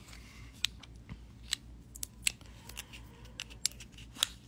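About a dozen small, sharp clicks at uneven intervals, close to the microphone, over a faint low hum.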